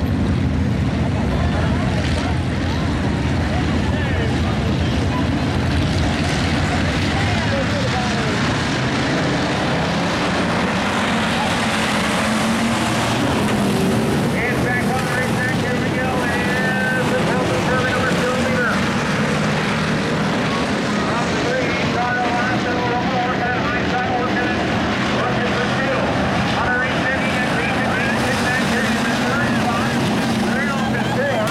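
A field of dirt-track hobby stock cars racing, their engines running together in a steady, continuous drone that rises and falls as the pack passes.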